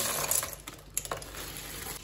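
Sun-dried apricots tumbling out of a plastic bag into a plastic colander, with the bag crinkling. The rush thins out within about half a second, leaving a few light clicks of single pieces dropping.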